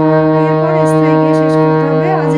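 Harmonium's reeds sounding one held note, a steady, unbroken reedy tone that ends a sung phrase of the lesson.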